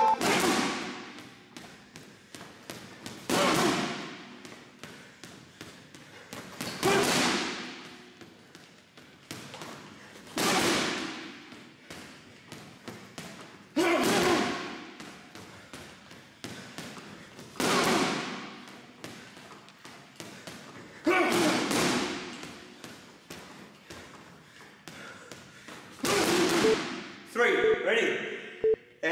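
Boxing gloves punching a heavy bag at close range: a steady run of light taps, broken about every three and a half seconds by a hard double shot that lands as the loudest hits.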